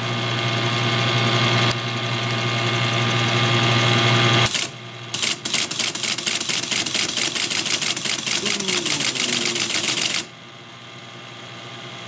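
Teletype Model 33 ASR: a steady mechanical hum for the first four seconds or so. It then prints a rapid, even clatter of characters at about ten a second, the 110-baud rate it is being fed, for some five seconds before going quieter.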